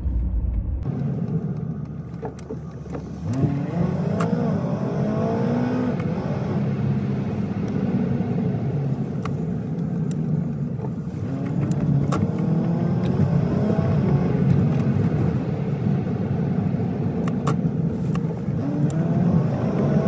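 Car engine and road noise heard from inside the cabin while driving, the engine note rising as the car accelerates about three seconds in and again around eleven seconds.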